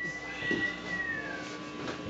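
A single high, thin tone held with a slight upward glide, then sliding down and fading out about one and a half seconds in, over low room noise.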